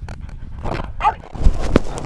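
Boxer dog making short noises while being lifted and held up in a man's arms, with a couple of low thumps in the second half.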